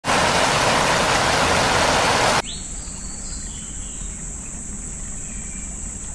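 Loud, even rushing of falling water that cuts off suddenly about two and a half seconds in. It gives way to a quieter background with a steady, high-pitched insect drone.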